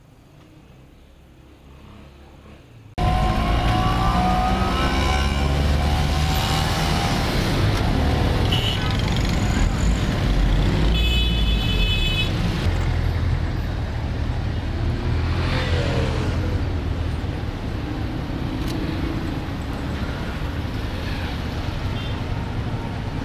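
Busy street traffic, starting abruptly about three seconds in: engines of cars and motorbikes passing close, some revving up. A vehicle horn sounds for about a second and a half near the middle.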